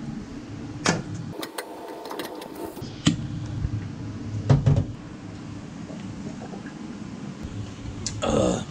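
A thermos water bottle being handled: sharp clicks of its plastic lid in the first three seconds, then a couple of knocks about four and a half seconds in as it is tipped up to drink, over a steady low hum.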